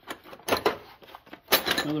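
Small metal hand tools clinking against each other as hands rummage through a drawer tray of chuck keys, drill bits and a push drill: a couple of sharp clinks about half a second in and a louder clatter at about a second and a half.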